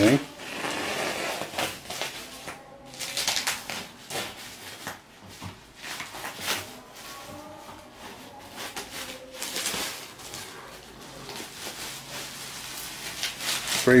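Plastic bubble wrap rustling and crinkling in irregular handfuls as it is cut and pulled off a wooden bed frame.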